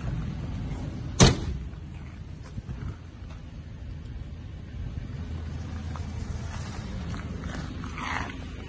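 A single loud slam about a second in as the pickup's rear load-bed closure is shut: the hardtop canopy's rear door or the tailgate. Low handling rumble follows.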